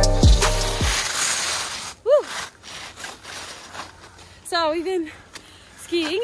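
Skis scraping over snow on a descent, after a hip-hop track's deep, falling bass-drum hits end within the first second. A single short vocal call comes about two seconds in, and brief voice sounds come near five seconds.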